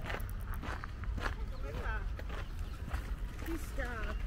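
Footsteps crunching on a gravel path, about two steps a second, with a short stretch of voice in the middle and again at the end.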